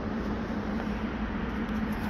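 Steady low hum over an even background noise, with no distinct event.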